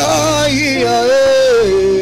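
A male gospel worship leader sings a slow, wordless line into a microphone: long held notes with vibrato that step downward, over sustained instrumental accompaniment.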